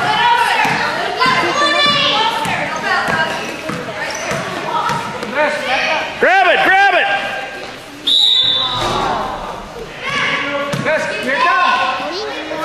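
Basketball dribbled and bounced on a gym floor during a children's game, with children and adults shouting throughout. A short steady whistle blast comes about eight seconds in.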